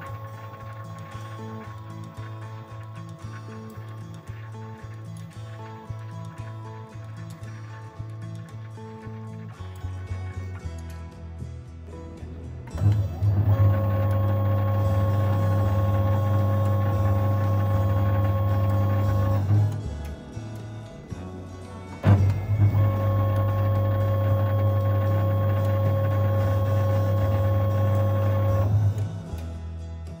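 Huaming SHM-D on-load tap changer motor drive unit running through two tap changes, each a steady electric motor hum of about six seconds that starts abruptly. Quieter background music fills the opening seconds.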